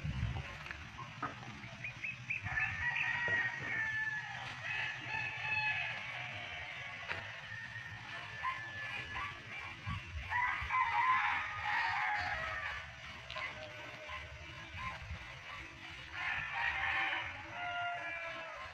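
Rooster crowing three times, each crow lasting a few seconds, with its pitch falling slightly.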